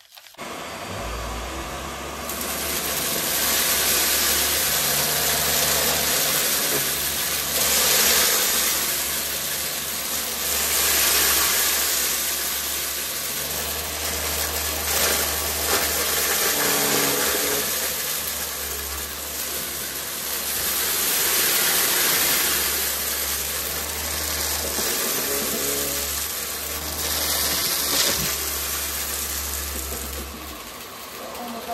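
A Vax cordless stick vacuum switches on just after the start and runs steadily, its motor hum under a loud rushing hiss that swells and eases as the floor head is pushed back and forth, sucking up a scattered mix of glitter, flakes and star confetti from a rug.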